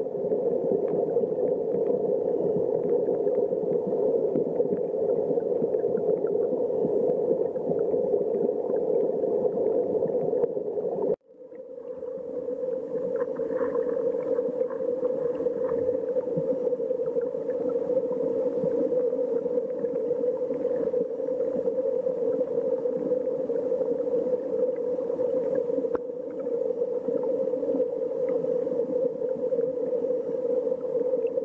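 Muffled, steady rush of river current recorded underwater among the stones of a clear, flowing stream. About eleven seconds in the sound cuts out for an instant and then fades back in.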